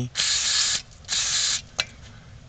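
Two short bursts of an aerosol cleaner spraying into a throttle position sensor's electrical connector to clean corrosion off the terminals, followed by a short click near the end.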